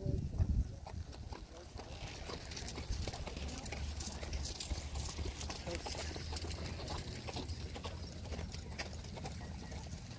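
Horse hoofbeats on the soft dirt of an arena: a continuous run of muffled, irregular clops, over a low rumble.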